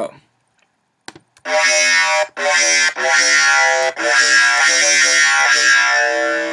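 Distorted dubstep bass from a Native Instruments Massive synth patch, played alone in three loud held phrases with short breaks between them, starting about a second and a half in.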